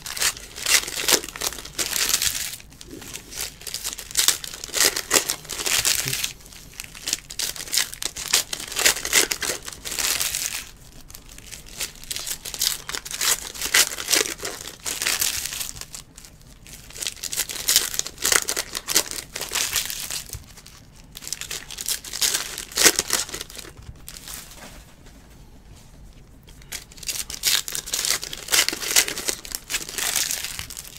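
Foil wrappers of Panini Select basketball card packs crinkling and tearing as the packs are ripped open by hand, in repeated bursts of a few seconds with short pauses between.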